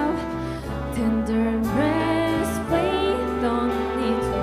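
A singer's voice with wavering, held notes over grand piano accompaniment, amplified in a concert hall.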